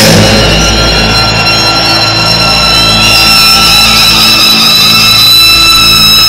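Live rock concert music played loud through an arena sound system: several high tones held steadily over a low bass drone, with no singing.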